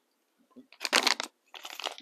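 Plastic face-mask sachets crinkling as they are handled, in two short bursts, about a second in and again near the end.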